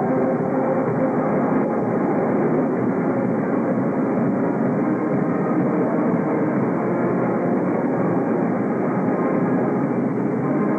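Marching band playing in a large indoor arena, heard only as a dense, steady, muffled din with no distinct beat or melody, its treble cut off by old videotape sound.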